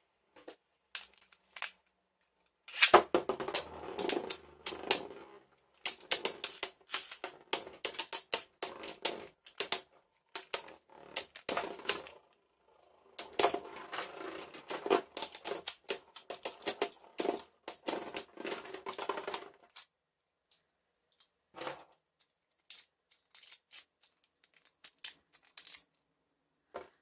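Beyblade Burst spinning tops clashing and rattling against each other and the plastic stadium: rapid clacking clicks in runs of several seconds, thinning out to scattered clicks near the end as the tops wind down and stop.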